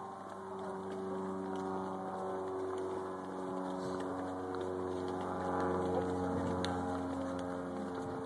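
Tour boat engine idling, a steady low hum that holds its pitch and shifts slightly in the middle.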